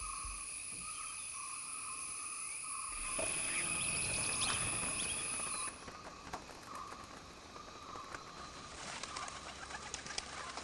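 Forest ambience: insects buzz steadily at several pitches, one of them pulsing, while birds call, growing louder about three seconds in. About six seconds in the sound cuts abruptly to quieter ambience with scattered bird chirps.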